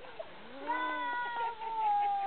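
A baby crying out in one long wail that falls slowly in pitch, right after being dipped underwater.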